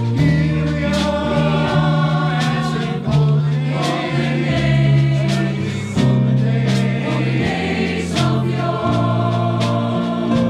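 A choir singing a song with instrumental accompaniment and a steady beat.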